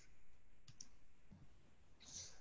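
Near silence in a pause between spoken sentences, with two faint clicks close together just under a second in.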